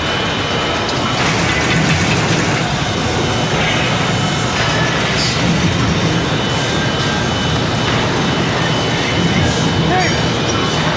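Steady, loud din of factory machinery, with a few faint knocks and clanks scattered through it.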